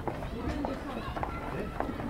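Indistinct voices of several people talking, with footsteps on stone paving.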